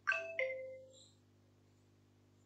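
Two-note electronic chime, the second note lower, each note ringing out briefly and fading within about half a second.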